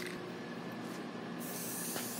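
Aerosol spray paint can spraying: a steady hiss that starts about one and a half seconds in.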